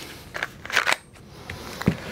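Handling noise as a pistol is lifted out of a foam-lined metal lockbox and set down: a few light clicks and a short rustle, then a sharper knock near the end.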